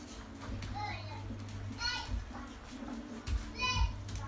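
Young children's voices: high-pitched shouts or squeals about two seconds in and again near the end, with a few low thuds among them.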